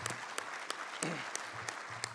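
Audience applauding, with individual claps standing out of a steady wash of clapping.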